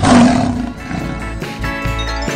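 A lion roar sound effect: one short roar, loudest at the start and fading within about a second, over background music.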